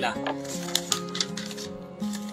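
A sheet of paper rustling and crackling as it is handled, a quick run of dry crackles over soft background music with steady held notes.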